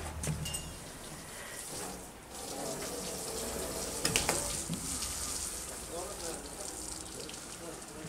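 Faint distant voices over a steady hiss, with a few light clicks.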